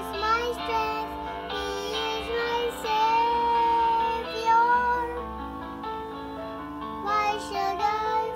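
A young girl singing a praise song over instrumental accompaniment, with a long held note about three seconds in.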